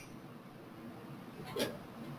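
Faint room hiss with one brief vocal noise from the presenter, a short hiccup-like catch of the breath or throat, about one and a half seconds in.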